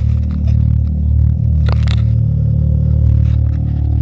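A Can-Am Maverick X3 side-by-side's engine idling steadily, with scattered clicks and scrapes close to the microphone.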